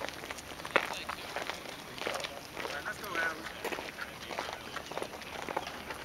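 Indistinct voices talking in the background, with a few short knocks, the sharpest about a second in.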